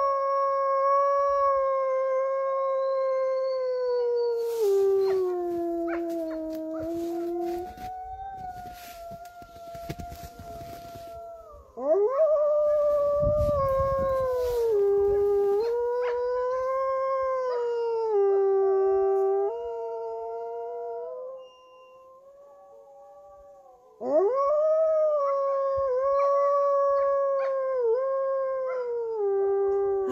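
A white wolf howling: three long howls. The first drops lower partway through, the second wavers up and down in steps, and the third opens with a quick rise. Crackling and rustling noise lies under the end of the first howl.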